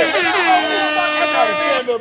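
An air-horn-style sound effect: one long, steady blaring blast that cuts off abruptly near the end, over excited shouting.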